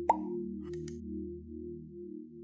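A single water-drop plop just after the start, the loudest sound, over ambient music's sustained low pad tones; two faint ticks follow a little under a second in.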